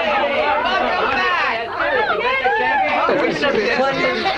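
Several people talking excitedly over one another in a crowded group greeting, no single voice clear.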